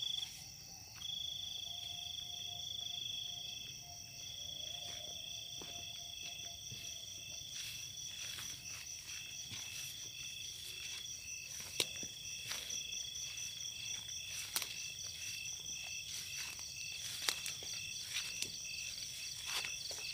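A steady chorus of night insects, with high continuous trills and one pulsing chirp. From about a third of the way in there is irregular crunching and rustling of footsteps pushing through dry grass and undergrowth.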